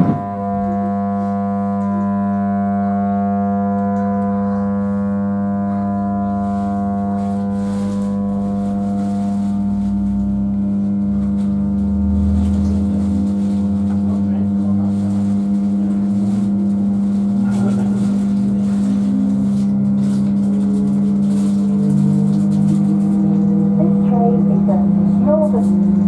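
Interior of a Class 319 electric multiple unit pulling away: a steady electrical hum with a stack of overtones runs under a low running rumble, with a faint rising whine and slowly growing loudness as the train gathers speed.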